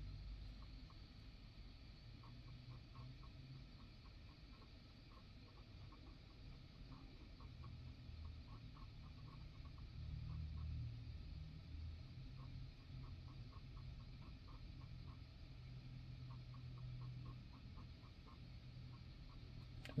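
Faint, rapid, irregular clicking over a low hum that swells and fades, which the technician calls a weird noise the truck makes while the cruise control module self-test runs.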